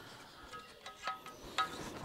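Faint, scattered light metallic clicks and short ringing tinks as small steel parts are handled and tapped inside a stripped engine block.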